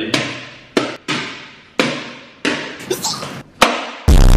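A small ball being hit back and forth with plastic toy rackets: a rally of about seven sharp knocks at irregular intervals, each ringing on briefly in a hard-walled room.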